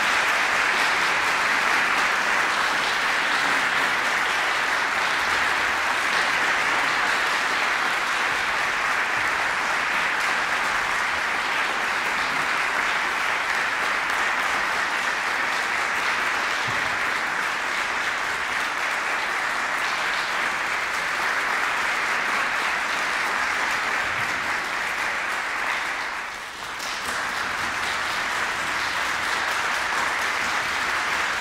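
Steady applause from many hands clapping, dipping briefly about 26 seconds in, then picking up again.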